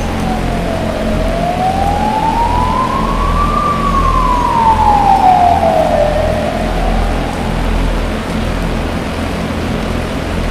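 Experimental electronic music: a siren-like tone slides slowly down, up and down again, loudest as it falls in the middle, over a hissing noise bed and a low pulsing bass.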